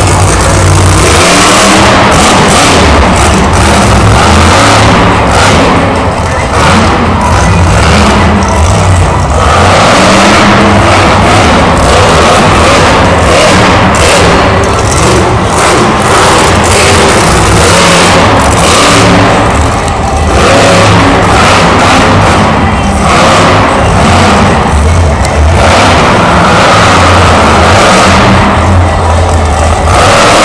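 Monster truck's supercharged V8 revving hard in repeated surges as it drives and jumps around the arena floor, very loud throughout.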